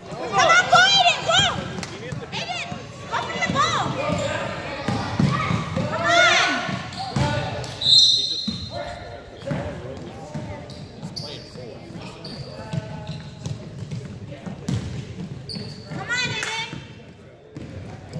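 A basketball dribbled and bouncing on a hardwood gym floor, with voices calling out across the echoing gym. A short, high referee's whistle sounds about eight seconds in.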